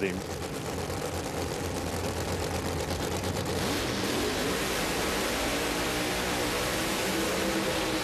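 Two top alcohol funny car engines running loud and steady at the starting line, heard through a TV broadcast. The sound thickens about three and a half seconds in, and near the end the cars launch off the line.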